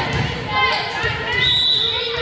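Volleyball bounced on a hardwood gym floor, with repeated thuds, against players' and spectators' voices echoing in a large gymnasium.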